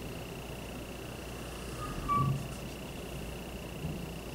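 Dry-erase marker drawn across a whiteboard, giving a brief thin squeak about two seconds in, over a steady faint high-pitched whine and low room tone.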